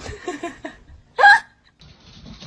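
A short, loud cry that rises in pitch, about a second in, after some soft voice sounds.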